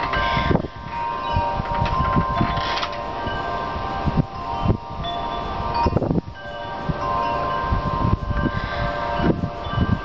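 Wind chimes ringing, several overlapping tones hanging on and fading at different moments, with gusts of wind buffeting the microphone.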